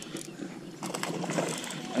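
Spinning reel being cranked to bring in a hooked bass, with faint mechanical clicking from the reel.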